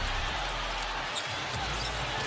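Basketball being dribbled on a hardwood arena court, a few faint thuds of the ball under steady crowd noise, as the ball is pushed up the floor on a fast break after a steal.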